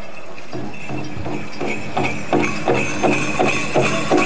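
Powwow big drum struck in a steady, even beat of about three strokes a second. It starts softly about half a second in and grows louder after about two seconds, with a steady high ringing over it.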